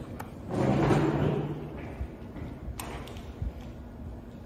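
Handling noise from a camera being moved: rustling and bumping, with a steady low drone for about a second near the start and a sharp click about three seconds in.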